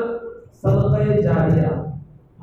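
A man's voice in a chanted, sing-song recitation, picking up after a short pause about half a second in.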